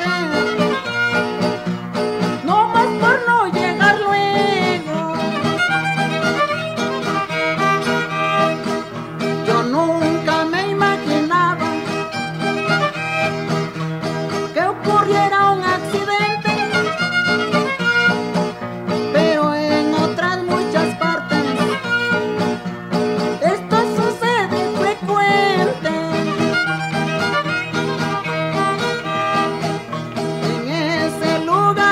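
Instrumental passage of Mexican regional string-band music: a violin plays a sliding melody over strummed guitar and a steady bass.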